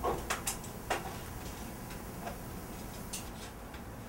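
Metal water heater strapping being pulled around the tank: a few light, sharp ticks and clicks of the thin strap, four of them in the first second and two more spaced out later.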